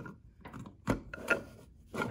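Hands working at a steel gun safe's door by its handle and keypad: a few sharp metallic clicks and knocks, the loudest about a second in.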